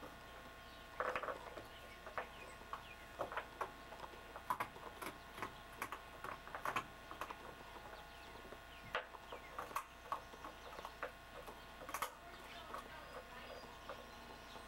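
A puppy gnawing on a chew held in its paws: irregular small clicks and crunches, a few every second or two, over a faint steady hum.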